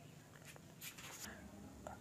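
Near-silent room tone with a few faint, brief scratchy sounds and a small click near the end.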